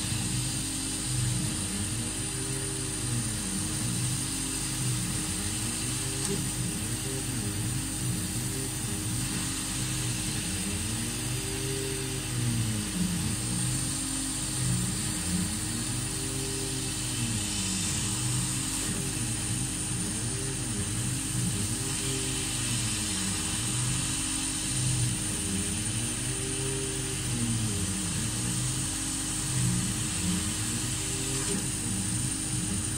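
Laser cutter's stepper motors whining in repeated rising and falling pitch arcs as the head traces small circles, over a steady hum and a steady high hiss from the machine.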